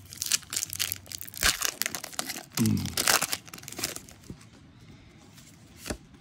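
Foil booster-pack wrapper being torn open and crinkled by hand, a run of rustles and rips through the first four seconds, quieter after that. A short voice sound comes about three seconds in, and a sharp click comes just before the end.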